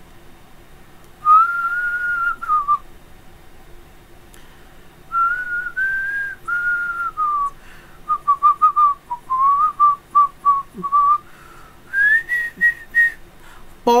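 A man whistling a tune: a held note that drops at its end, then several longer notes, a run of quick short notes, and a higher phrase near the end. A faint steady hum sits under it.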